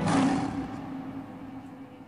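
As the background music cuts off, a sudden noisy burst swells and then fades away, leaving a low hum that dies down over about two seconds.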